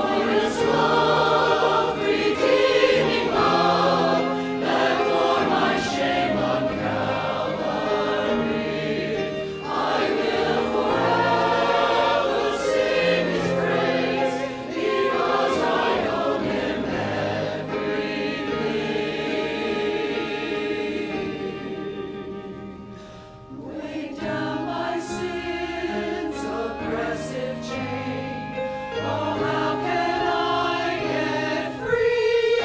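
Mixed choir of men's and women's voices singing a hymn with instrumental accompaniment. The sound eases off briefly about three-quarters of the way through, then the singing picks up again.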